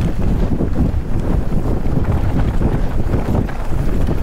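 Strong crosswind buffeting the microphone on an exposed ridge: a loud, steady, rumbling wind roar with no let-up.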